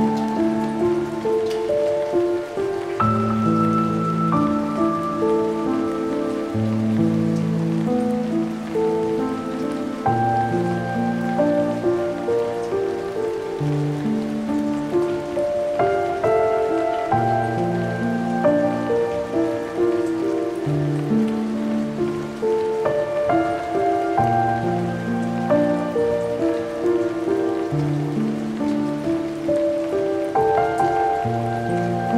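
Slow, melancholic solo piano playing sustained chords over a low bass line, with a steady recorded rain sound layered under it.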